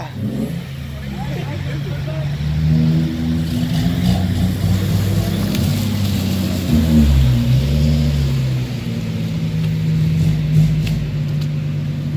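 Car engines running at low revs, a steady low drone whose pitch dips and climbs back a little after the middle.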